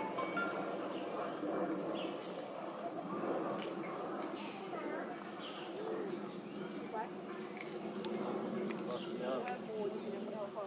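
Steady, high-pitched insect chorus with an unchanging drone, over an indistinct murmur of many voices.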